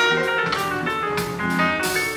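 Live band playing an instrumental passage: guitar over a steady drum beat, with a cymbal or snare stroke roughly every 0.6 seconds.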